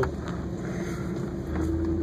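Vehicle engine running and tyres rolling over a sandy dirt trail, heard from inside the cab with the window up. The engine note grows louder about one and a half seconds in.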